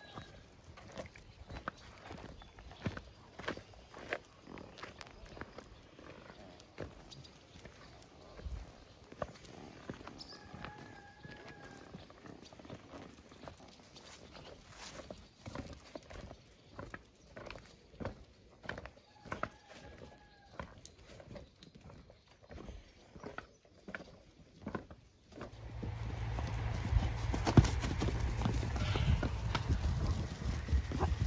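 Footsteps crunching on gravel, with a puppy scampering alongside, heard as a run of small scuffs and clicks and a faint short call now and then. About 25 seconds in, wind buffets the microphone with a loud low rumble, and horses' hooves sound on the track.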